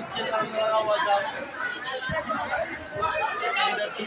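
A crowd of people talking over one another: overlapping chatter with no single clear voice.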